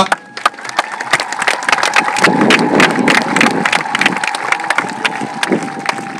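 Crowd clapping, many irregular overlapping claps, with a steady high tone held underneath.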